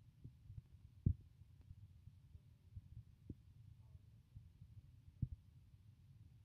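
Quiet room tone with a low rumble and three soft, dull thumps, the loudest about a second in.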